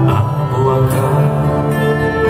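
Live music from a large choir and a military brass band holding long sustained chords.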